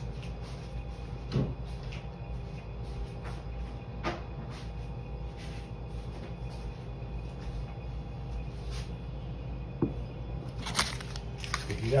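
Scattered knocks and clicks of things being handled in a kitchen over a steady low hum, with a louder clatter of clicks near the end.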